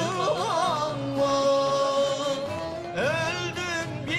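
A singer performing a Turkish folk song (türkü) in an ornamented, wavering style over a bağlama lute ensemble, holding one long note about a second in, then sliding up into the next phrase near the end.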